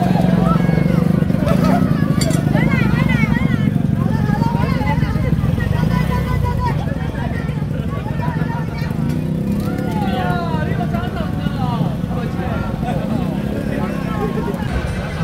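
Engines of small pickup trucks and a scooter running at idle close by, a steady low rumble, with people talking over it at times.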